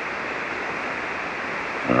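Steady hiss of band noise from a ham radio receiver on 40-metre SSB, heard between transmissions, with the sound cut off sharply above the receiver's narrow voice passband.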